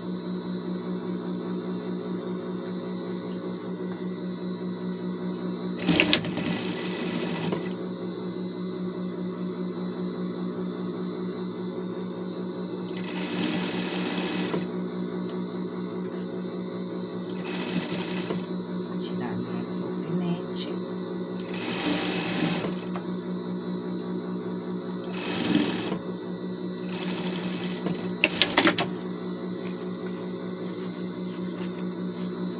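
Industrial lockstitch sewing machine sewing denim, its motor humming steadily throughout. The needle runs in about seven short bursts of a second or so, with pauses between them as the fabric is repositioned.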